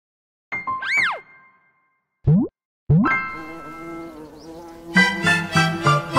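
Cartoon sound effects for an animated logo intro. About half a second in there is a pitch glide that rises and falls. Around two seconds in comes a quick upward slide, then another upward slide into a ringing chime, and a bright, rhythmic jingle starts about five seconds in.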